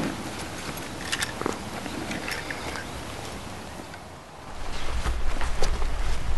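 Outdoor field ambience with scattered light rustles and clicks of people moving about and handling gear. About three-quarters of the way in, a louder low rumble of wind on the microphone starts.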